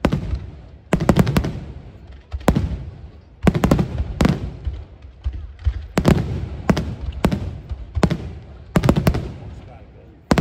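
Aerial firework shells bursting overhead, in quick clusters of loud bangs every second or two, each cluster trailing off in a low rumble.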